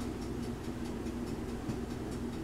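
Low steady hum with faint, fairly regular ticking over it.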